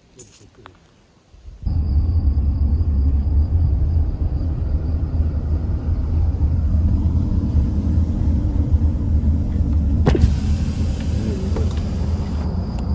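Steady low rumble of a car on the road, heard inside the moving car's cabin. It starts abruptly about two seconds in after a quiet stretch with a few faint clicks. There is a single sharp click near the end.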